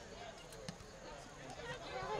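Faint distant voices of players and spectators on an outdoor soccer field, with a couple of sharp knocks about half a second in.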